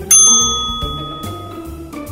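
A single bright bell ding sound effect, struck once just after the start and ringing for about a second and a half as it fades, over background music.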